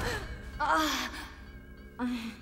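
A cartoon character's short frustrated sigh-groan, one vocal sound falling in pitch about half a second in, at the failure of an escape attempt.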